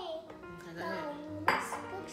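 Background music with one sharp clatter about one and a half seconds in: a plastic bowl knocking down onto a stone countertop.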